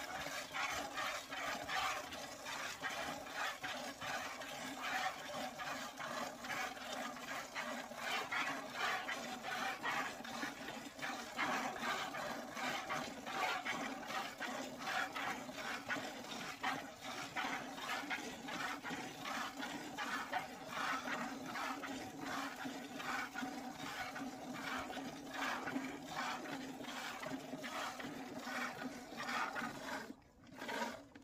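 A cow being milked by hand: jets of milk squirting rhythmically into a plastic bucket, about two to three squirts a second, over a steady low hum.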